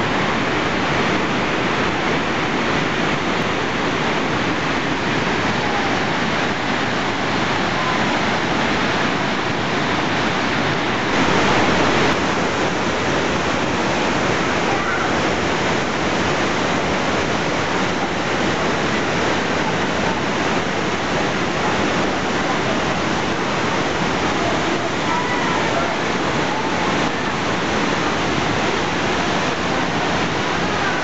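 Cascata delle Marmore waterfall: a loud, steady rush of heavy falling water, briefly a little louder about eleven seconds in.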